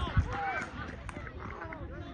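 Scattered men's shouts and calls across an open football pitch just after a goal has been scored.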